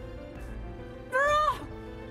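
Sustained dramatic background music; about a second in, a woman lets out a short, loud anguished cry that rises and then falls in pitch.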